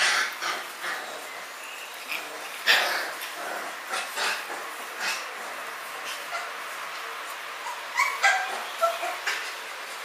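Samoyed puppies at play giving short yips and small barks at irregular intervals, with a quick run of sharper yips near the end.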